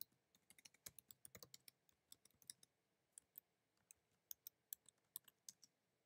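Faint typing on a computer keyboard: quick, uneven runs of keystroke clicks that stop shortly before the end.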